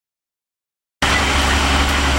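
Silence for about a second, then abruptly the steady low drone of a vehicle's engine and road noise, heard from inside the cab while driving.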